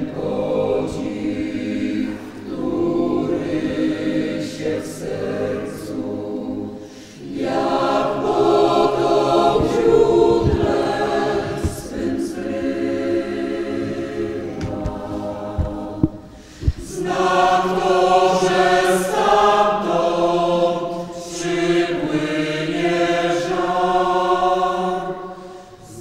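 Many voices singing a church hymn together, in long held phrases with short breaks about seven and sixteen seconds in. A couple of brief knocks sound just before the second break.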